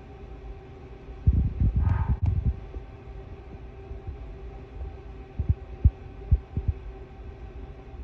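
Dull, low thumps on the microphone, a cluster about a second in and a few more scattered around the middle, over a steady low hum, with one sharp click near two seconds in.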